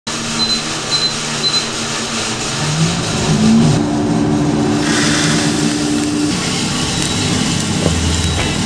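Drum coffee roaster running mid-roast, a steady rush of fan and drum noise. Three short high beeps sound about a second in, and a low motor hum rises in pitch a few seconds in, then holds steady.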